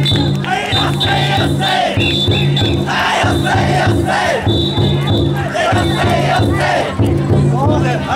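The big taiko drum of a chousa drum float (taikodai) beating a steady, even rhythm, under a crowd of carriers shouting chants together as they heave the float.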